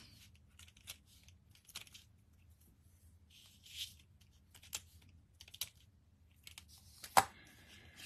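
Quiet, scattered small clicks and short papery crackles as the release liners are peeled off foam adhesive dimensionals with a pointed tool, with one sharper tap about seven seconds in.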